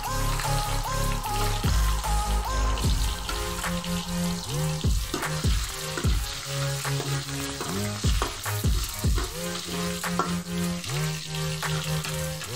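Oil sizzling steadily as garlic, ginger and red onion sauté in a pan, under background music with steady bass notes and sliding tones.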